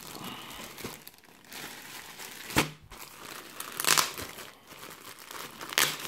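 Clear plastic packaging bag crinkling and rustling as hands open it and handle the folded t-shirt inside, with a few louder crackles.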